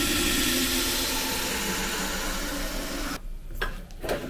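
A steady hissing, rushing noise that cuts out suddenly about three seconds in, followed by a fainter, patchier noise near the end.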